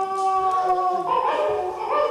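A long held howl that sinks slightly in pitch, then breaks into shorter wavering notes about a second in.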